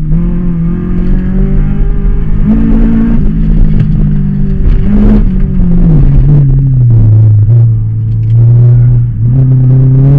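1996 Honda Civic's B18 VTEC 1.8-litre inline-four heard from inside the cabin, driven hard through an autocross course: revs hold and climb a little, drop to a lower pitch about six seconds in with a brief dip near the end, then rise again.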